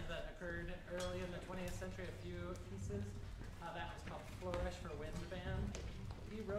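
A man's voice speaking to an audience in a hall, with a few small clicks and clinks as players move on stage.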